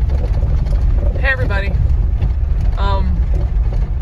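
Steady low rumble of tyres and rough dirt road heard inside the cabin of a Jeep being towed behind a pickup on a tow bar. A person's voice is heard briefly twice over it.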